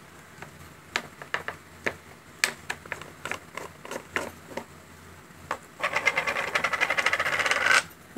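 Fingers and nails working at a plastic loose-powder jar as its paper sifter seal is opened: a scatter of light clicks and taps, then, about six seconds in, roughly two seconds of fast, dense scratchy ticking.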